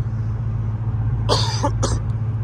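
A man coughs twice, about a second and a half in, over the steady low drone of a Nissan Altima's cabin at highway speed.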